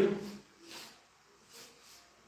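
Chalk scraping on a blackboard in two short, faint strokes about a second apart.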